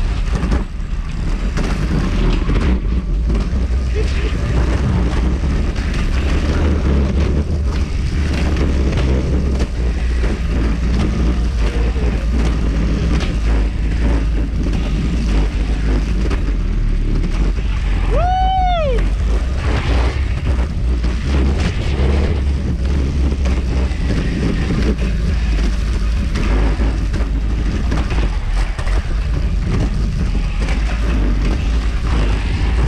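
Wind rushing over the microphone with a steady low rumble from the trolley rolling along the roller zipline's rail. About two-thirds of the way through, one short pitched call rises and then falls.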